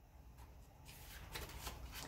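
A picture-book page being turned by hand: a faint rustle of paper that starts about a second in and grows a little louder toward the end.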